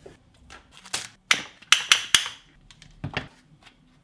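Hands unpacking a small cardboard box with a foam insert: a string of short clicks and rustles, about half a dozen, mostly in the middle of the stretch, as the manual and small metal clips are handled.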